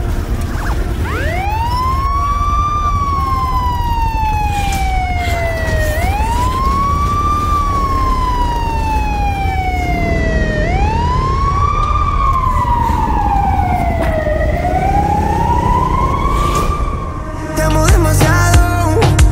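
Siren-style sweeping tone over a steady low bass: a quick rising whoop followed by a slow falling glide, four times, about every four and a half seconds. It fades just before a new, louder song begins near the end.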